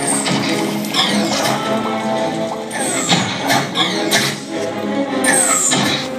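Animated film soundtrack playing from a TV: sustained music with high falling whooshing sound effects about 1, 3 and 5 seconds in.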